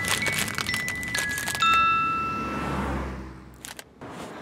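A smartphone alarm sounding in bright, ringing chime notes over the crinkle of a foil snack bag and clinks of glass bottles being pushed about. The chimes stop about three seconds in and the sound fades away.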